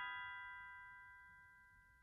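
A bell-like chord from a lullaby, several ringing tones together in a glockenspiel or music-box sound, fading slowly until it is nearly gone. No new note is struck until just after the fade.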